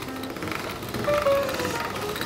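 Hand-cranked pasta machine rolling dough, its gears giving a fast, even rattle of clicks as the crank turns, over background music.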